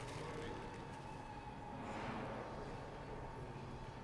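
Quiet room background: a low steady hum with a thin faint tone, and no distinct event.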